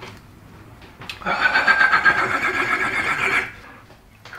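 A high, quavering whinny-like call, starting about a second in, lasting about two seconds and cutting off sharply.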